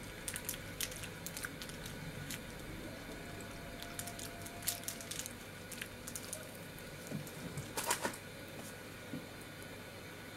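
Faint, scattered crinkles and clicks of a Hershey's Cookies 'n' Creme chocolate bar wrapper being handled and unwrapped, with a louder flurry of crinkling about eight seconds in.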